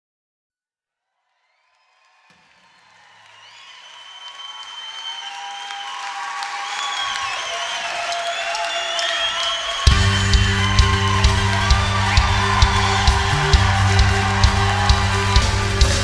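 Live Celtic rock band music. After about two seconds of silence, an instrumental melody with ornamented notes fades in slowly. About ten seconds in, the full band enters loudly with drums and bass keeping a steady beat.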